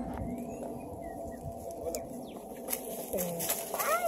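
Birds calling faintly in the background, a few short chirps and slides, with a person's voice exclaiming near the end.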